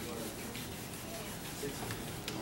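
Classroom background noise: a steady rubbing, rustling noise with faint voices underneath.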